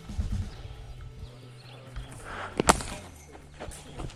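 A cricket bat strikes a leather ball once, a sharp crack about two-thirds of the way in, followed about a second later by a fainter knock.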